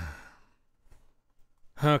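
Speech only: the drawn-out, falling end of a man's sarcastic "Fun!", then a short, nearly silent pause, and he starts talking again near the end.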